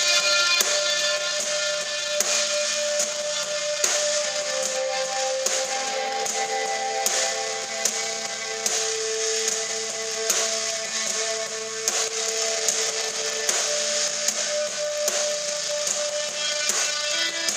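Live rock band playing: electric guitar notes ringing and changing over a drum kit keeping a steady beat, with a hit about every three-quarters of a second.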